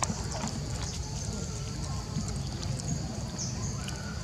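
Outdoor background with faint distant voices, a steady high-pitched hiss and a few soft clicks; there is no clear call from the monkey.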